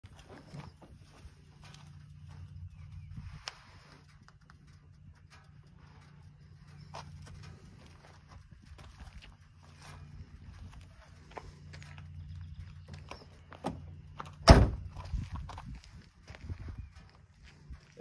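Footsteps crunching on gravel and scattered knocks and rustles of handling, over a steady low hum. About three quarters of the way through comes one loud slam, the SUV's rear hatch being shut.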